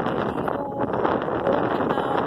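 Strong wind buffeting the camera microphone, a steady rough rumble that covers everything else.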